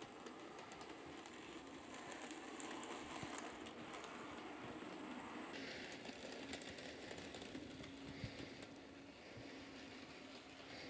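Bachmann Thomas N scale model locomotive's small motor running with a faint steady hum while it pulls its two coaches, the wheels ticking lightly over the track joints and turnouts. The locomotive is kept at a fairly high speed because it still runs poorly.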